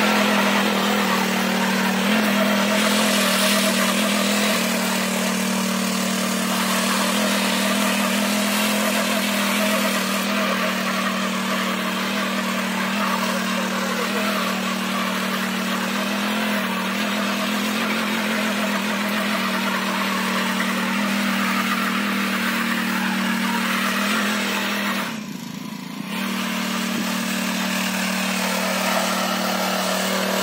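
Small petrol engine of a single-wheel power weeder running steadily under load as its tines till the soil between crop rows. The engine note briefly drops away about 25 seconds in, then returns.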